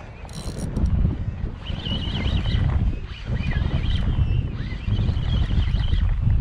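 Strong wind buffeting the microphone, a loud, steady low rumble, while a hooked bluefish is fought on a spinning rod. Faint, wavering high-pitched sounds come through twice, about two seconds in and again about five seconds in.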